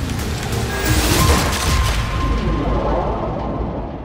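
Trailer score with heavy booms over dense, loud low noise and a held high tone. About two and a half seconds in the top end drops away so the sound turns muffled, as if plunging underwater, and it then fades.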